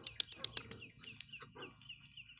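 A bird calling a fast run of repeated high chirps, about six a second, starting about a second in. Before it comes a quick burst of several sharp clicks.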